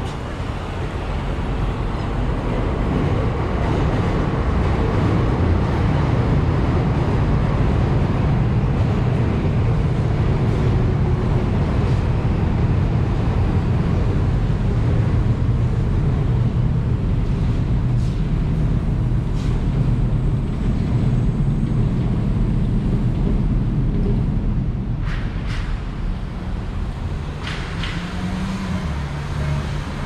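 Steady low rumble of city road traffic, swelling over the first few seconds and easing near the end, with a few short clicks in the last few seconds.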